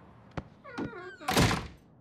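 A short voice-like sound, then a loud, brief thump about one and a half seconds in.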